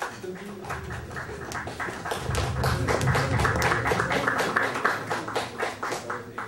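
Audience applauding: many separate hand claps that run on steadily.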